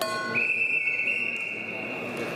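Referee's whistle: one long steady blast starting about a third of a second in, stopping the wrestling action, over the murmur of the hall crowd.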